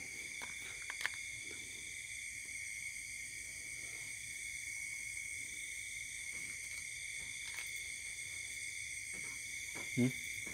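Steady night chorus of insects in a rural rice field: a continuous high trill held at several steady pitches. A single faint click comes about a second in.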